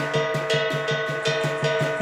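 Qilin dance percussion band: a Chinese drum beaten in a steady run of about five strokes a second, with clashing cymbals and a ringing gong sustaining over the beat.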